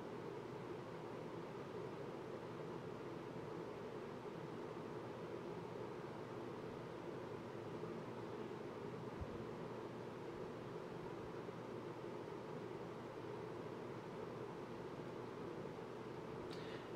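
Steady low background noise, room tone with a faint hum, unchanging throughout and with no distinct sounds in it.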